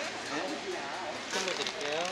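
Faint speech over the background chatter and hubbub of a busy street market.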